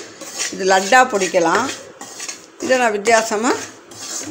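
Metal spatula scraping and stirring crumbly wheat flour in a steel kadai, the metal rubbing on metal giving two pitched squealing scrapes, one about half a second in and another near three seconds in.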